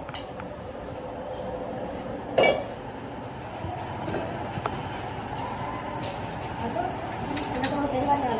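Metal clanks from a cast-iron pump casting being handled and clamped into a machine fixture: one sharp, loud clank about two and a half seconds in, then a few lighter clinks near the end, over a steady workshop hum.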